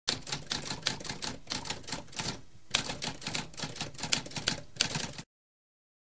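Typewriter keys being struck in a rapid run of clicks, several strokes a second, with a brief pause a little before halfway. The typing cuts off suddenly about five seconds in.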